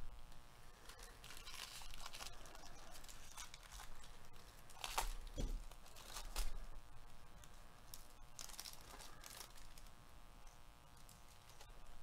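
A foil trading-card pack wrapper being torn open and crinkled by gloved hands, in several short crackly bursts, loudest around the middle.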